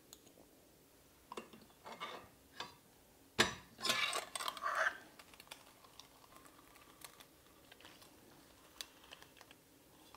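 Stainless-steel potato ricer clicking and knocking as boiled potatoes are loaded and pressed through it into a glass bowl. A few light clicks, one sharp knock about three and a half seconds in, then about a second of clatter, then only faint occasional ticks.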